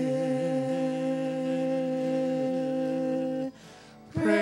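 A small mixed vocal group, three women and a man, holding one long chord in close harmony. The chord breaks off about three and a half seconds in.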